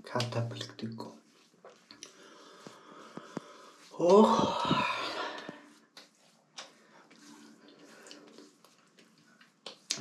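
Hands rubbing and patting aftershave lotion into a freshly shaved face, with soft skin rubbing and light pats. A man's voice gives a loud, drawn-out exclamation about four seconds in.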